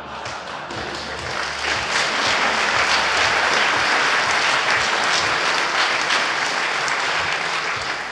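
Audience applauding, a dense patter of many hands clapping that builds about two seconds in and eases slightly near the end.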